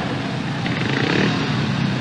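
Several 500cc single-cylinder speedway motorcycles running at the start gate, their engines holding a steady drone.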